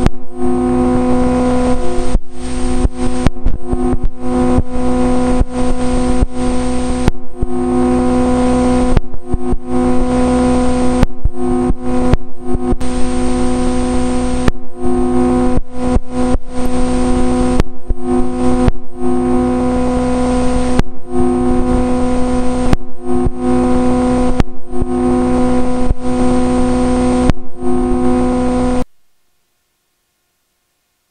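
Loud, steady electrical buzz with a thin high whine, cut by many brief dropouts: a fault in the recorded audio rather than kitchen sound. It cuts off suddenly near the end.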